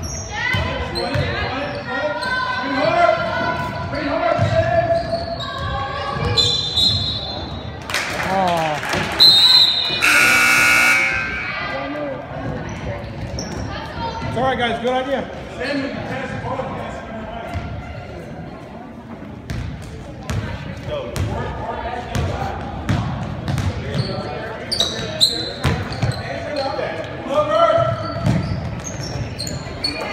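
A basketball bouncing on a hardwood gym floor during play, with voices calling out in a large echoing gym. About nine seconds in a short whistle blast sounds, followed by a loud gym buzzer for about a second and a half.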